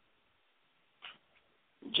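Near silence, a gap in the broadcast audio, broken by one faint, brief sound about a second in; a man's voice begins right at the end.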